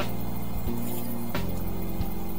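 Background music: held low chords that shift every half-second or so, with sharp percussive hits at the start and again about a second and a half in.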